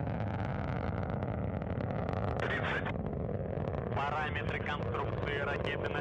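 Soyuz booster's first-stage engines rumbling steadily during ascent. Short bursts of voice come over the rumble about two and a half seconds in and again from about four seconds on.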